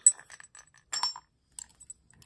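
ERA Big 6 six-lever steel padlock being worked with its brass key while its shackle is tested: metallic clicks and clinks, one sharp click at the very start and a second cluster about a second in.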